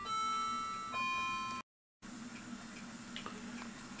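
Bell-like chime notes struck about a second apart, each ringing on, until the sound cuts off abruptly about a second and a half in. Then only a low steady hum with a few faint clicks.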